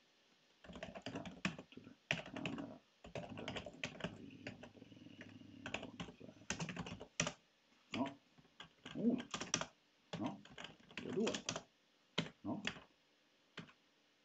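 Typing on a computer keyboard: irregular runs of quick keystrokes with short pauses between them, as shell commands are entered.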